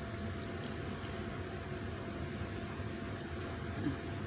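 Small metal hair clips being handled in hair, giving a few faint clicks and light rattles in the first second and one sharper click about three seconds in, over a steady low hiss.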